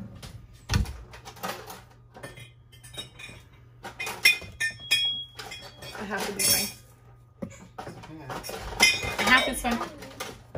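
Kitchen clatter: metal utensils clinking and scraping against pots and dishes, with a container knocked down on a granite countertop, in a run of short, irregular clinks and knocks. One brief ringing clink comes about halfway through.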